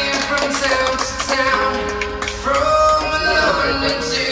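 Music with a singing voice, with scattered hand claps over it.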